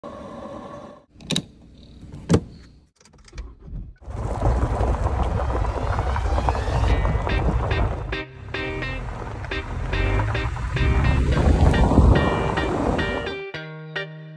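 Two sharp clicks near the start. From about four seconds, the steady rumble of a vehicle driving on a gravel road, with rhythmic music coming in over it about halfway through.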